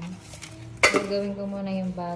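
A single sharp metallic clink of kitchenware, a metal pan or dish, about halfway through, over a steady held tone like background music.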